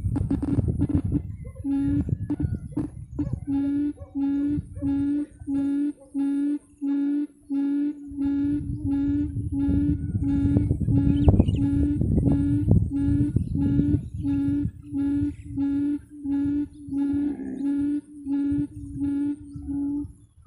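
Quail call repeating steadily: short calls on the same pitch, nearly two a second, over a rough low rumble.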